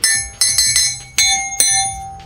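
Five bright metallic bell-like strikes, about one every 0.4 s, each left ringing so the tones overlap.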